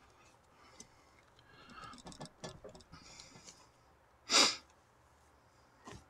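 Faint rustling and small clicks of nylon paracord being handled and pulled through a wrap of drum lacing, with one short, louder hiss-like noise about four and a half seconds in.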